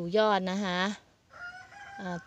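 A rooster crowing in the background: one held call about a second long, sliding slightly down in pitch, starting just after the halfway point.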